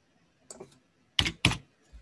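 Keystrokes on a computer keyboard: a light key press about half a second in, then two louder strokes a third of a second apart a little past the middle, and a faint one near the end.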